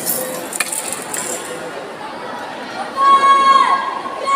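A loud held shout about three seconds in, falling in pitch as it ends, over a steady crowd murmur with scattered light clinks.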